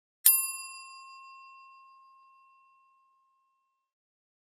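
A single bright bell ding sound effect, struck once just after the start and ringing away over about three seconds.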